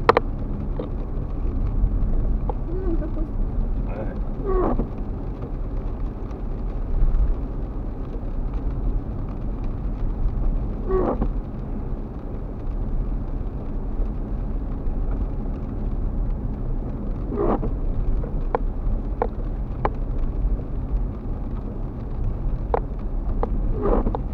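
Steady low rumble of a car's engine and tyres on a wet road, heard from inside the cabin. A few short clicks or squeaks come in the second half.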